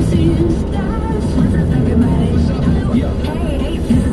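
Car radio playing music with a voice over it, inside a moving car's cabin over steady road noise.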